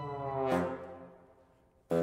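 Chamber ensemble with amplified bassoon playing contemporary music: a low held note slides downward, then a loud accented chord hit about half a second in rings out and dies away. A second sharp hit comes at the very end.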